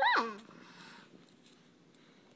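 A toddler's short, high-pitched vocal sound that rises briefly and then slides down steeply in pitch, right at the start.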